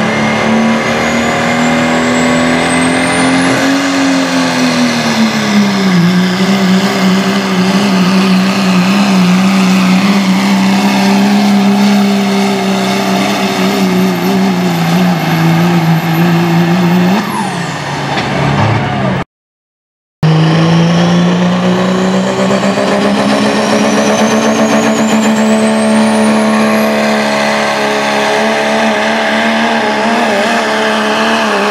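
Turbocharged diesel pickup pulling a weight sled at full throttle, its engine held at high rpm under load with a high turbo whistle. The whistle climbs over the first few seconds, holds, then drops away as the engine winds down about 17 seconds in. After a dropout of about a second, a second diesel pickup starts its pull, its engine running hard and its turbo whistle climbing steadily.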